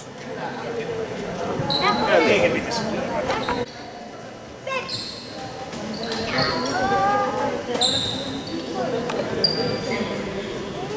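Basketball court sounds in a large, echoing gym: sneakers squeak on the hardwood floor six or so times, a ball bounces, and voices call out across the hall.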